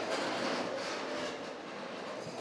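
A room full of people standing up at once: chairs scraping and shifting, clothes rustling and feet shuffling, blending into a dense steady noise.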